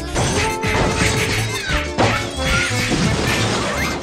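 Background music with edited-in cartoon crash and impact sound effects, one right at the start and the loudest about two seconds in.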